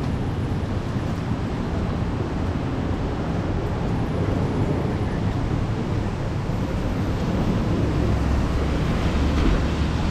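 Steady city street noise in the rain: traffic rumbling and tyres hissing on wet roads, growing a little louder near the end.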